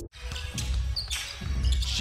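Live basketball game sound in a gym: a ball being dribbled on the hardwood court amid crowd noise. It comes in just after a musical intro cuts off abruptly at the start.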